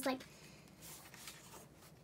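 Faint rustling and sliding of paper and cardboard as a paper insert and a DVD case are handled in and over a cardboard box.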